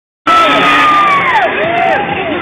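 A motocross bike's engine at high revs, its note falling steeply about a second and a half in as the rider leaves the ramp and rising again in the air, over a cheering crowd and PA music.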